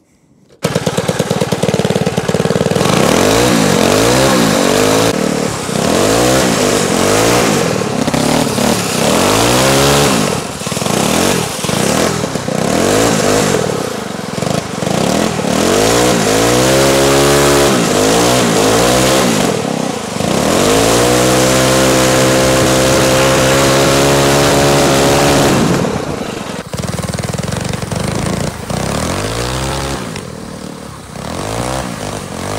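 Small gas-engine drift kart engines running hard through laps, revving up and down over and over as the karts drift. About two-thirds of the way through, one engine holds a steady high rev for several seconds before easing off.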